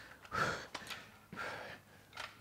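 A man breathing hard from exertion, with two audible breathy exhales about half a second and a second and a half in.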